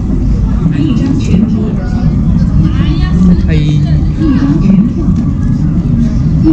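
Voices of people talking nearby, over a steady low rumble.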